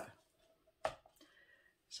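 A single light knock about a second in as a paper cup is set down on a stretched canvas; otherwise quiet.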